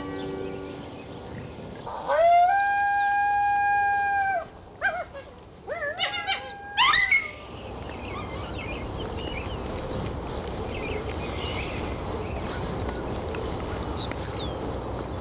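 An animal call: one long, high, held note about two seconds in, then several shorter wavering calls and a sharply rising squeal near the middle. After that comes a steady outdoor hiss with faint bird chirps.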